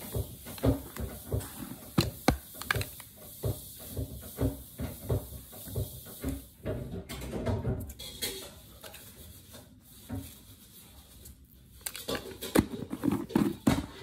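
A run of light, sharp knocks, about three a second, then salt spooned into a wooden mortar of peeled garlic cloves about seven seconds in, and more knocks near the end.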